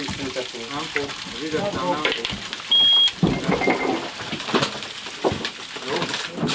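Men's voices talking indistinctly over a steady hiss, with one short, high electronic beep about three seconds in, the loudest sound.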